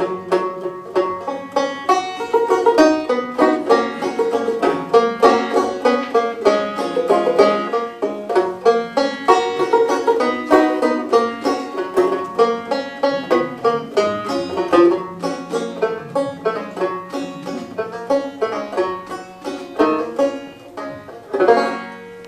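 Solo banjo played without singing: a steady run of quick plucked notes carrying the tune, ending on a last chord just before the end.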